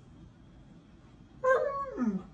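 A husky-type dog gives one short, howl-like whine that falls in pitch, about one and a half seconds in.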